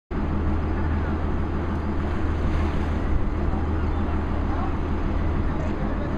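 Tour boat's engine running steadily, a continuous low drone, with wind and water noise over it.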